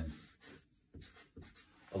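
Dry-erase marker on a whiteboard: several short, faint strokes as a line is drawn and the letters "LV" are written.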